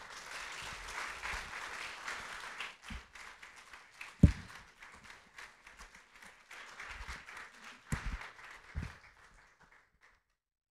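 Congregation applauding, loudest in the first few seconds and thinning out toward the end. A few dull thumps of handheld microphones being handled and set in their stands cut through it, the loudest about four seconds in.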